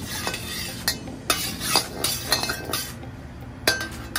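Metal wok spatula scraping and clinking against a steel wok as it spreads oil around the pan. The strokes come short and irregular, a few leaving a brief metallic ring.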